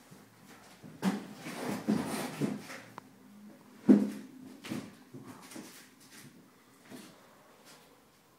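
Handling noise while a large gong is unpacked: a run of rubbing and bumping, then one sharp knock about four seconds in, and a few lighter bumps after it. The gong is not struck and rings out.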